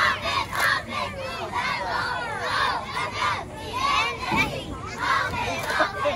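A group of young girls shouting a sideline cheer together, many high voices overlapping in repeated loud calls.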